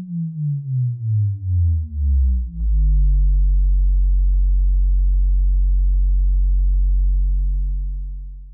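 Synthesized intro sting: a deep electronic tone that pulses as it slides down in pitch, settling about two and a half seconds in into a steady low bass drone that fades out at the end.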